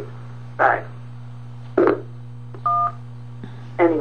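A single touch-tone keypad beep, the two-tone DTMF tone of the "1" key, lasting about a third of a second, pressed on a phone during voicemail playback. A steady electrical hum runs under it, and two brief clipped voice fragments come before it.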